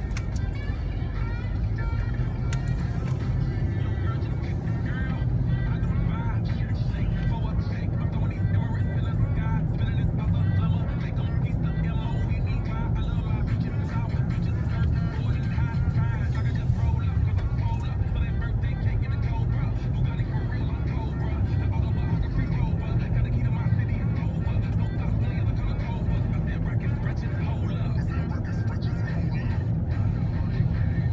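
Steady low road and engine rumble heard inside a moving car's cabin, with music and a voice playing faintly over it.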